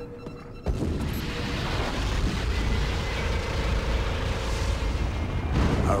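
Cartoon sci-fi battle sound effect: a boom that starts suddenly about a second in and runs on as a low rumble for several seconds, with music underneath.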